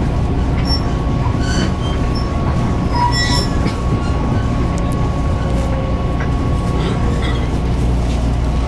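Taiwan Railway EMU500 electric multiple unit heard from inside the car as it rolls along a station platform on arrival: a steady running rumble with a thin steady whine, and a few brief high squeals about three seconds in.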